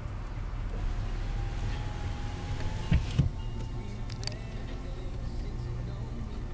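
2006 Ford F-150's 5.4-litre V8 idling, heard from inside the cab as a steady low rumble under the hiss of the air-conditioning blower, with two sharp clicks about three seconds in.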